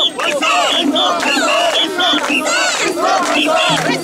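A crowd of mikoshi bearers shouting a carrying chant together as they bear the portable shrine, with short, repeated whistle blasts cutting through the voices.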